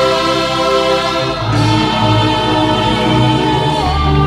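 Church music: a choir singing a slow hymn over long held chords, the chord changing about one and a half seconds in and again near the end.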